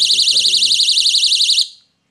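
Magnetic door/window entry alarm's buzzer sounding a quite loud, high-pitched tone that warbles rapidly, set off by pulling the magnet about a centimetre away from the sensor. It cuts off abruptly about a second and a half in, when the magnet is brought back beside the sensor.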